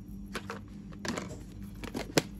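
Plastic food storage containers and their snap-on lids being handled, giving a few light plastic clicks and knocks over a low steady background hum.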